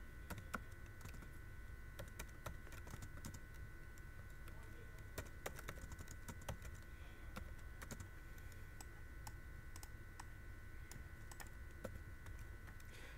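Computer keyboard typing: faint, irregular keystrokes, with a steady faint electrical whine and hum underneath.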